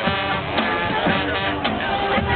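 High school marching band playing a field show: held horn chords over a beat of drum strikes.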